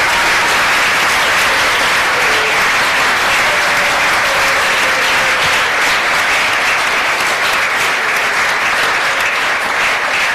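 A large audience in a lecture theatre applauding, steady and loud, in acknowledgement at the end of a talk.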